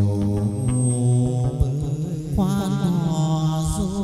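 Chầu văn (hát văn) ritual music: sustained instrumental notes with a few light clicks near the start, then a wavering, held vocal line from about two seconds in.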